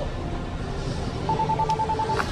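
Rapid electronic beeping: a single high tone pulsing about ten times a second, starting a little over a second in, over a steady background hum.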